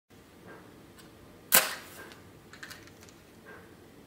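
A wooden match struck on a matchbox, one sharp scrape about one and a half seconds in with a brief hiss as it flares. A few fainter clicks come before and after it.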